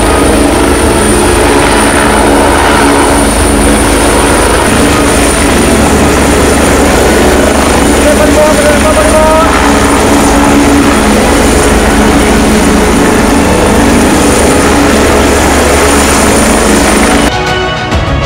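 Military helicopters flying low overhead: loud, steady rotor and engine noise, which cuts off suddenly near the end.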